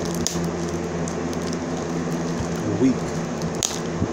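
Plastic shrink-wrap on a cologne box crinkling as it is cut and worked loose, in a few short crackles, the loudest near the end, over a steady room hum.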